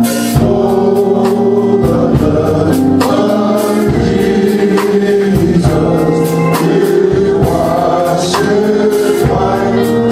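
Gospel vocal group of men singing in harmony into microphones, with long held notes.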